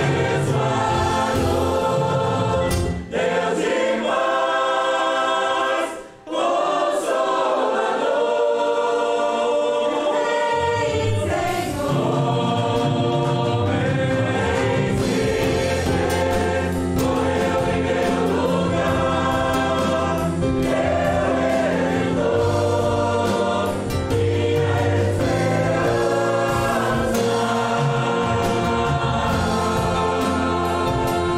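A group of voices singing the chorus of a Portuguese-language hymn, accompanied by a church band of drum kit, bass guitar, guitar, cello and keyboard. The bass and drums drop out a few seconds in, leaving voices and higher instruments, and come back in about ten seconds in.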